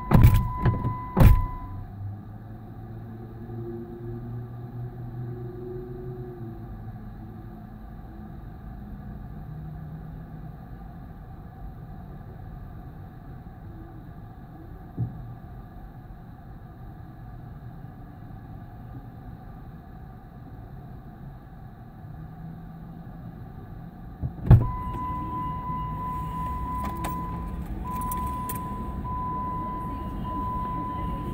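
Vehicle door thumps with a steady electronic warning tone, a car's door-open chime. The tone sounds over two thumps at the start and stops; after a loud thump about 24 seconds in it comes back and keeps on, with a brief break near the end. A low vehicle rumble runs underneath.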